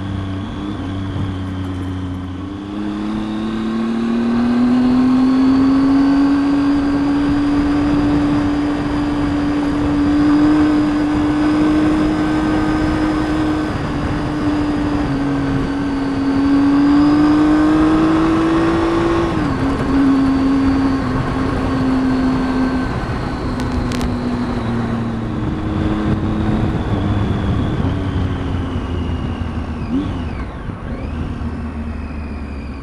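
Triumph Tiger 800 XCx's three-cylinder engine pulling the bike along a dirt road. The engine note drops at a gear change about two seconds in, then climbs and holds fairly steady. It drops again at another shift a little past halfway and eases off toward the end.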